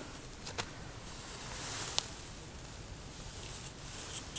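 Faint rustling handling noise with two light clicks, about half a second in and about two seconds in.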